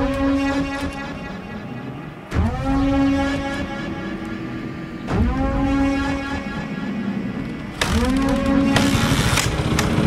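Scorpa SY 250 F trials bike's four-stroke single-cylinder engine being blipped on the throttle three times, a little under three seconds apart, each blip rising sharply then settling back toward idle. A louder rushing noise joins the last blip near the end.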